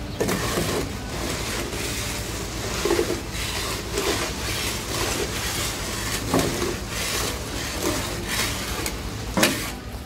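Leftover gravel being scraped with a long-handled tool out of a dump truck's raised steel tipper bed, in short strokes about once a second, over the truck's steady idling diesel engine. A sharp knock comes near the end.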